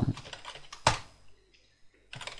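A few keystrokes on a computer keyboard, the loudest a sharp click about a second in.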